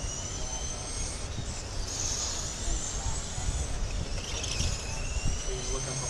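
Electric radio-controlled late model race cars running laps of a dirt oval, their motors giving high thin whines that rise and fade every second or two as the cars power down the straights, over a low rumble.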